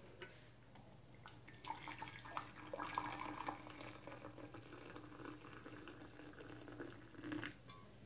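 Hot water poured from a metal pot into a large mug: a quiet, uneven trickle and gurgle that starts about two seconds in and stops shortly before the end.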